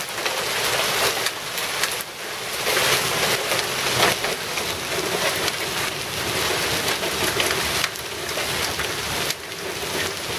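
Hail mixed with heavy rain pelting a concrete sidewalk and lawn: a dense, steady patter of countless small impacts, dipping briefly a few times.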